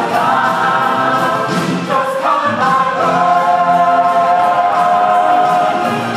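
Mixed show choir singing in parts, changing to one long held chord about two and a half seconds in.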